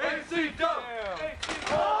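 Young men shouting and yelling excitedly, with a sharp crash about one and a half seconds in as a wrestler lands on a folding table that breaks under him; a long yell starts near the end.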